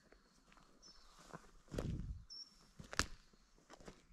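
Footsteps through forest undergrowth, dry sticks and litter crackling underfoot, with a sharper snap of a stick about three seconds in.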